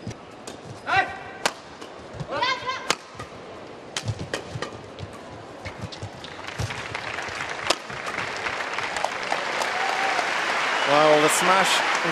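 Badminton rally: sharp cracks of rackets striking the shuttlecock, with court shoes squeaking about a second in and again near two and a half seconds. Crowd cheering and applause swell over the last few seconds as the point is won, and a voice calls out near the end.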